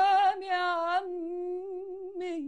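A woman singing unaccompanied, holding a long note with vibrato; about a second in, the full voice gives way to a softer hummed note that trails off.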